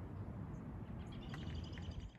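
A bird chirping: a quick run of short, high calls starting about halfway through, over a steady low rumble.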